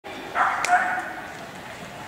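Small dog barking, two loud barks about half a second in, ringing in a large echoing indoor hall.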